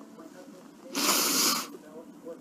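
A crying woman's single loud sniff, about a second in and lasting under a second.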